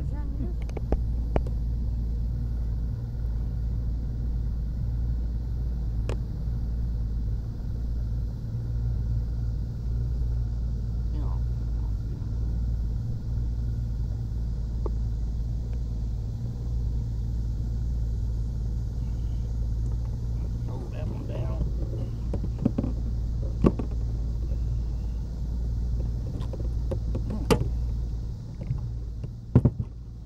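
Boat motor running at a steady speed, a low, even drone, with a few sharp clicks and knocks near the end.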